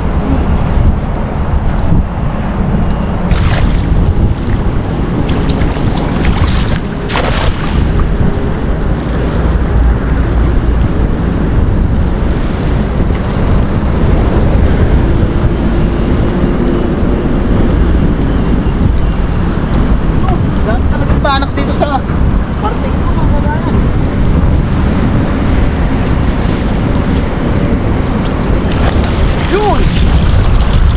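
Wind buffeting the microphone in a loud, steady rush, over water splashing around a man wading and working a cast net in a shallow river. There are a few short high chirps about two-thirds of the way through.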